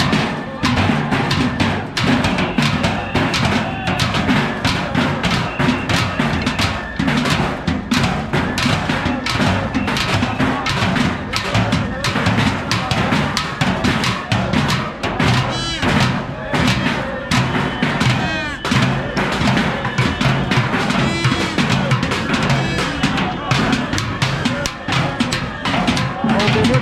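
Many sticks beating on barrels at once, a dense, unbroken clatter of drumming.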